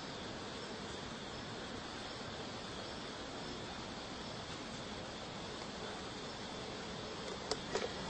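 Steady, even background hiss of outdoor night ambience on a camcorder microphone, with two faint clicks near the end.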